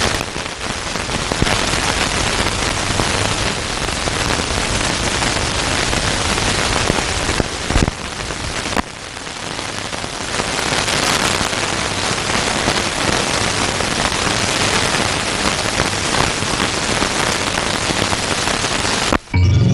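Loud, steady rain-like hiss and crackle with no tune or voice in it, broken by a couple of sharp clicks about eight seconds in.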